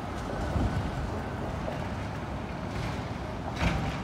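Downtown street ambience: a steady low rumble of traffic and wind on the microphone, with a brief louder burst near the end.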